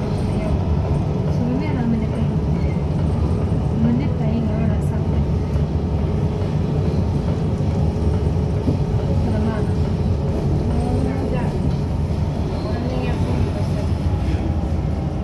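Kuala Lumpur MRT train running along its track, heard from inside the car as a steady low rumble. Faint voices sound beneath it.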